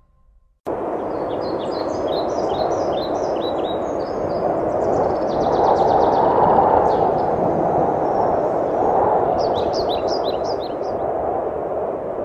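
Birds chirping over a steady rushing background noise, a nature ambience that cuts in suddenly under a second in. There are clusters of quick high chirps near the start and near the end, and a fast trill in the middle.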